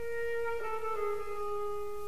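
Concert band music: a single woodwind line holds a long note, steps down to a slightly lower note about half a second in, and sustains it.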